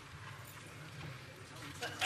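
Faint ambience of a large legislative chamber: indistinct murmur of voices with soft, irregular knocks and footsteps.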